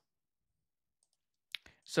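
Dead silence, then two short, sharp clicks about a second and a half in, just before a man's voice starts.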